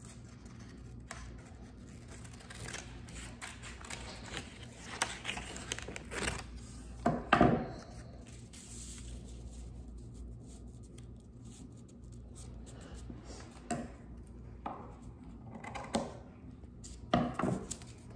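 Scissors cutting construction paper, with paper being handled and pressed down; scattered short snips and rustles, the loudest about seven seconds in.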